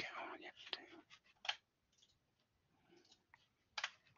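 A soft breathy murmur in the first second, then a handful of faint, sharp clicks spread through the quiet, the clearest about a second and a half in and near the end.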